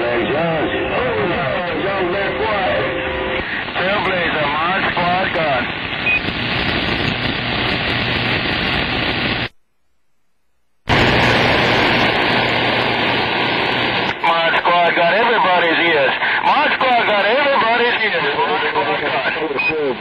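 CB radio receiver on 27.025 MHz playing garbled voices of long-distance skip stations under heavy static. The audio drops to near silence for about a second halfway through, then a stronger signal comes back in.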